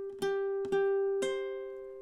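High-G ukulele fingerpicked: one fretted note plucked about every half second, then a higher note about a second in that rings on together with it as both fade. It is the third fret of the E string repeated, then the third fret of the A string under a barred finger.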